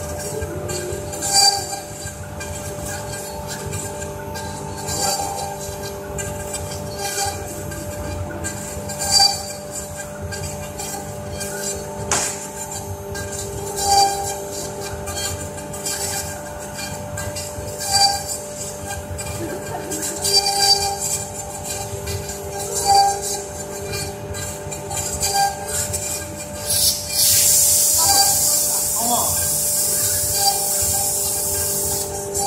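Two CNC router spindles running together and carving into a wood board, a steady whine with louder surges every two to four seconds as the bits work through the cut. A loud steady hiss joins in near the end.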